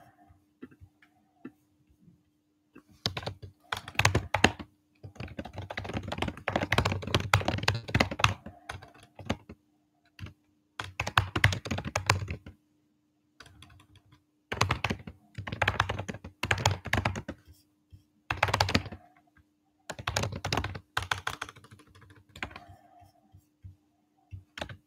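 Typing on a computer keyboard: runs of rapid keystrokes, starting about three seconds in, broken by short pauses, over a faint steady hum.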